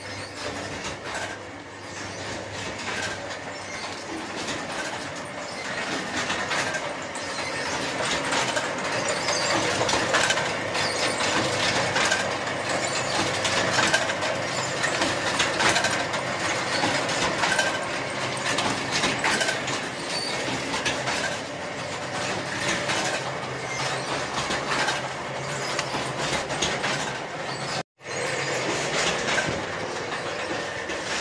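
Paper plate making machinery running with a continuous, dense mechanical clatter. The sound drops out for an instant near the end.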